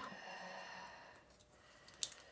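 Faint handling sound fading out over about the first second as a small pair of scissors is laid down on a cutting mat, then near silence.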